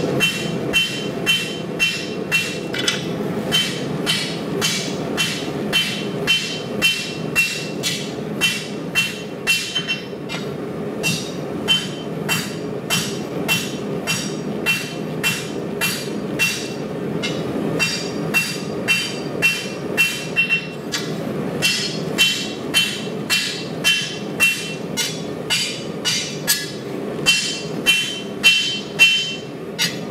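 A hand rounding hammer strikes red-hot steel bar stock on a steel anvil in a steady rhythm of about two blows a second. Each blow rings briefly and brightly, and there are short breaks in the rhythm twice. The blows are hand-forging the knife blade's profile, under a steady low background rumble.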